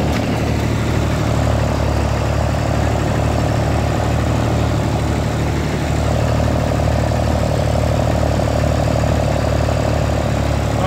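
Ford Dexter tractor's three-cylinder diesel engine running steadily at a low, even speed.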